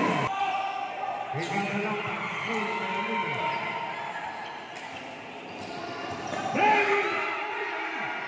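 A basketball dribbled on a gym's hard court, with players' voices calling out, the loudest call near the end.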